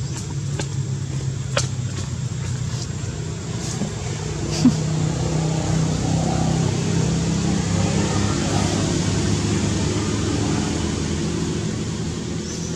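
A motor vehicle engine hums steadily, growing louder through the middle and easing off near the end. There are a few faint clicks early on and a brief sharp sound a little before the middle.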